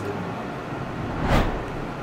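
Steady room tone with a low hum, and one brief soft rush of noise a little over a second in.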